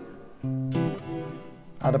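Peavey Omniac JD-USA electric guitar played clean through the AUFX:Space reverb app, with the room size turned down. A chord is dying away, then new notes are picked about half a second in and change soon after, each held and ringing with a short reverb tail.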